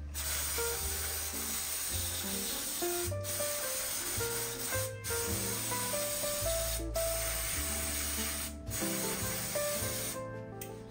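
Aerosol spray can hissing steadily onto a bicycle's rear cassette, with four brief breaks in the spray, over background music.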